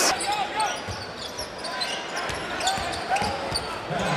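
A basketball bouncing several times, at uneven intervals, on a hardwood court under the steady murmur of a large arena crowd.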